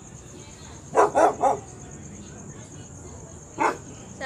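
A dog barking: three quick barks about a second in, then a single bark near the end, over a steady high insect drone.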